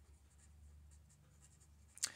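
Marker pen writing on paper: faint, short scratching strokes as letters are drawn, over a low steady room hum.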